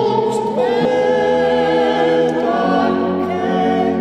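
Music: a choir singing long held chords, which move to new notes twice.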